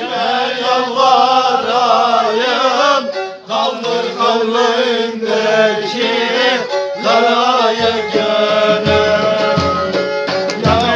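Men singing a Turkish folk song together in wavering, ornamented lines. About eight seconds in, a davul bass drum starts to beat under the voices.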